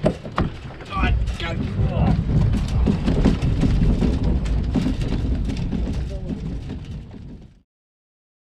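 Wind buffeting the camera's microphone in a loud, uneven low rumble, opening with a sharp knock and fading out near the end.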